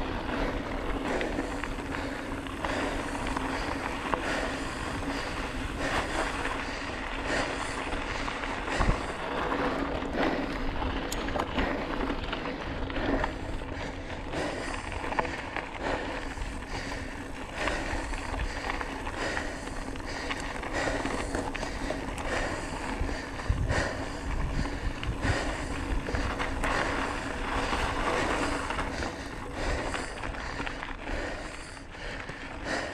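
Bike tyres rolling and crunching over a rough gravel dirt road, with irregular rattles and knocks from the bike jolting over bumps and a low rumble of wind on the microphone.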